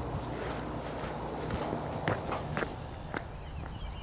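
A few scattered footsteps as a man walks away, over a steady low rumble of outdoor background noise.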